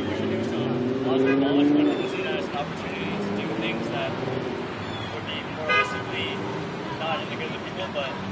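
City street traffic with a vehicle horn sounding a long two-note tone for the first two seconds, loudest just before it ends, and a short sharp honk near six seconds, over distant voices.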